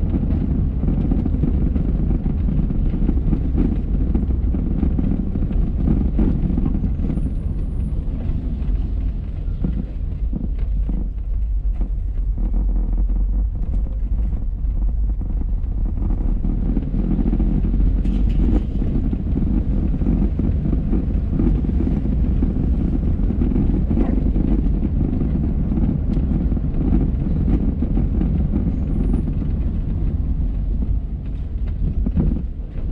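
A car's engine and tyre noise heard from inside the cabin as it drives along a street: a steady low rumble, a little quieter for a few seconds near the middle.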